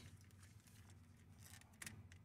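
Near silence, with a few faint clicks of a small radio-mount adapter being handled and worked loose by hand, one a little sharper shortly before the end.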